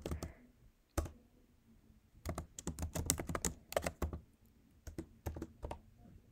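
Typing on a computer keyboard: a single keystroke about a second in, a quick run of keystrokes for about two seconds, then a few more near the end.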